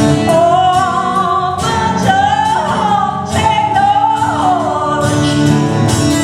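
A woman singing live into a microphone over instrumental accompaniment, holding long notes that slide up and down in pitch.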